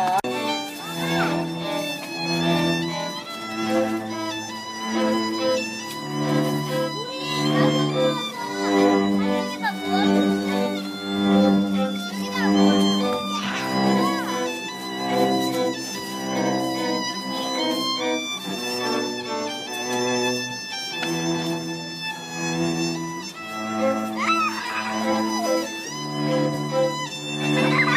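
Background music played by bowed strings, a violin melody over cello and double bass, with notes held for about half a second to a second each.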